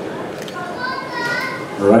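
Audience members in the hall shouting out in high voices over a steady crowd hubbub. A man's voice on the PA starts near the end.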